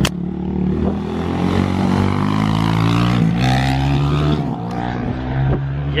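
A motor vehicle engine running and revving: its pitch climbs, drops suddenly about three seconds in, then holds steady, over a haze of road or wind noise. A sharp click right at the start.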